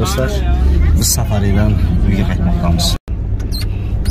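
Voices inside a car over the steady low rumble of the engine and tyres, which cuts out briefly about three seconds in before the rumble carries on more quietly.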